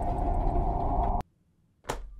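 TV soundtrack of a swelling drone with a deep rumble and a held tone, growing louder, then cutting off abruptly about a second in. Near silence follows, broken by one short sharp sound near the end.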